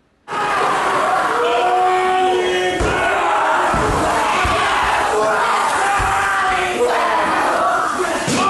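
Haka performed by a large group of schoolboys: many male voices shouting and chanting in unison, starting suddenly just after the start, with a few low thuds in the middle.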